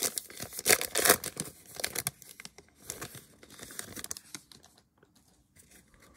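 Foil trading-card pack being torn open and crinkled by hand, loudest in the first two seconds, then fading to softer rustling as the cards are pulled out.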